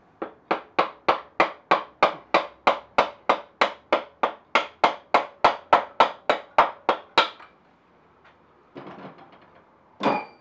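Hammer tapping the rear wheel spindle of a Suzuki Bandit 1200 to drive it out of the swingarm: about two dozen quick, even blows, roughly three and a half a second, each with a short ring, stopping about seven seconds in.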